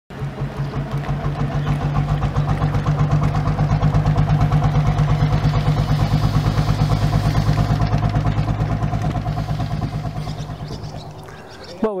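Engine of a wooden Baltic trading vessel motoring past slowly: a steady low-pitched, evenly beating run that swells to its loudest partway through and then fades as the vessel moves away.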